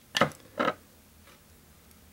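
Two short knocks about half a second apart, from a small hard object being handled on a hard surface.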